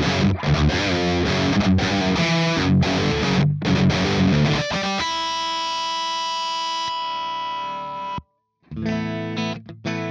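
Cort G290 FAT II electric guitar played with heavy distortion. A fast, choppy riff runs for about five seconds, then a chord rings out for about three seconds and cuts off suddenly. After a brief gap the riffing starts again near the end.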